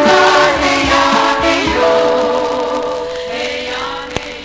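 Recorded 1970s group vocal pop: several voices singing together over a band with a steady beat. About halfway through the voices settle into a long held chord that fades out, like the close of a song.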